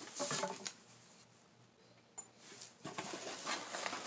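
Soft rustling and light handling noises of items being moved in and out of an open cardboard box, with one small sharp click about two seconds in.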